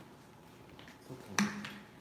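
Quiet indoor room tone, broken by a single sharp click about one and a half seconds in.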